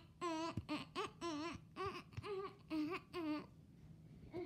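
A young girl vocalizing wordless nonsense syllables in a wavering, sing-song voice: about seven short notes in a row at much the same pitch, stopping about three and a half seconds in.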